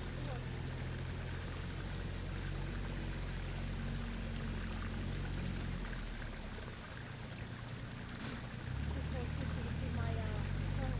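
A low, steady engine hum that drops away about six seconds in and comes back up near the nine-second mark.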